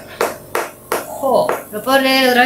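Speech in a small room, broken by a few short sharp taps in the first second.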